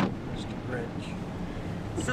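Steady road and engine noise heard from inside a moving Chrysler car's cabin.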